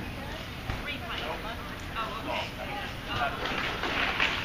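Indistinct talk of several people in the background, over a steady low rumble of outdoor noise.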